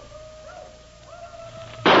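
Quiet held notes of a dramatic music underscore, then near the end a single sudden, loud gunshot sound effect with a trailing tail: a shot fired from a dwindling supply of six bullets.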